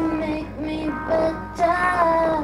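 A woman singing a melody into a handheld microphone, holding each note for about half a second with small slides between them.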